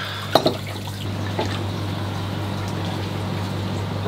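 Water running and trickling steadily across a flooded basement floor, let out while a pond's bottom-drain purge ball valve was changed under full pressure. A steady low hum runs underneath, and two sharp knocks come near the start.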